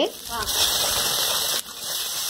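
Wet mustard paste sizzling in hot oil in a kadai of frying dried fish as it is stirred in with a spatula: a steady hiss that sets in about half a second in and drops out briefly near the end.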